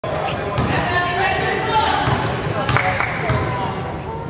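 A basketball bounced on a gym floor a few times, each bounce a short thud, over voices talking in the hall.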